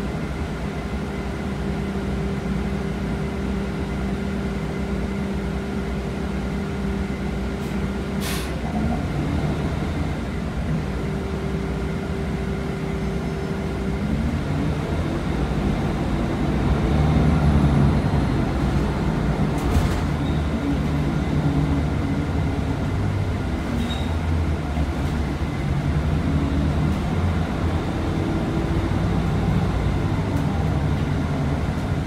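Inside a 2019 Nova Bus LFS city bus: the engine hums steadily, there is one brief sharp sound about eight seconds in, and then the bus pulls away. The engine and drivetrain noise grows louder, peaks about halfway through, and then runs on steadily.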